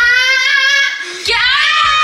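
A high-pitched voice holding a long drawn-out note, then after a short break about a second in, a second long call that slides in pitch, half sung and half yelled.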